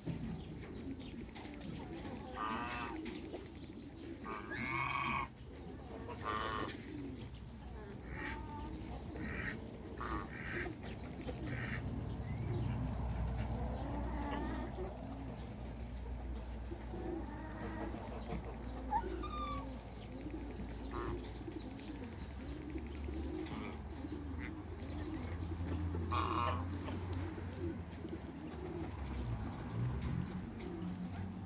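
Domestic waterfowl calling: clusters of short pitched calls in the first twelve seconds or so and one more call near the end, over a steady low rumble.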